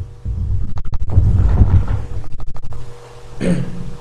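Loud, low rubbing and scraping noise with a fast flutter, broken by two quick runs of sharp clicks, the first just under a second in and the second past two seconds.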